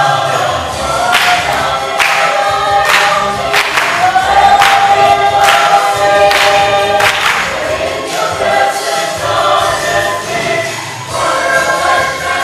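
A church choir sings a gospel-style song with musical accompaniment. Sharp beats come about once a second through the middle of the passage.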